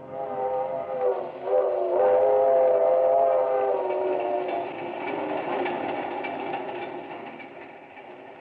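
Train whistle sounding a held chord of several tones, a short blast and then a longer one, over the clatter of a moving train. The whistle dies away after about four seconds and the train's rumble fades out near the end. It is a sound effect from a 1940s radio broadcast.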